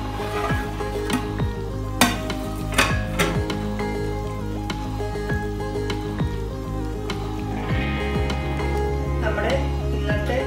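Duck curry bubbling and sizzling in a pot, with a few sharp metal clinks about two to three seconds in and stirring with a wooden spatula near the end, over steady background music.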